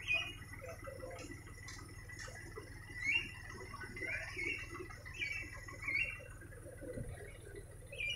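Short, high chirps from a small bird, coming every second or so at irregular spacing, over a faint, steady low rumble.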